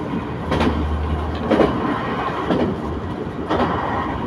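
Diesel local train running at speed, heard from inside the carriage: steady rumble of wheels on rail with a sharp clack from the wheels crossing rail joints about once a second.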